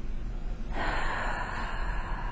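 A woman's long, audible breath in through the mouth, like a gasp. It starts sharply about three-quarters of a second in and lasts just over a second.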